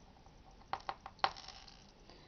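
A few faint, sharp clicks and clinks of small hard craft items being handled while hot glue is applied, three or four taps in quick succession in the second half.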